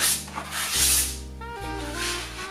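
Palette knives scraping acrylic paint across a canvas in a few rasping strokes, the loudest about a second in, over background music with a bass line and melody.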